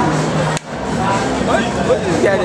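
Indistinct background chatter and room noise, with a faint steady hum, broken about half a second in by a sharp click and a momentary drop in level. Voices grow clearer toward the end.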